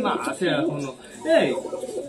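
Domestic pigeons cooing, low wavering calls from the flock, under a man's voice.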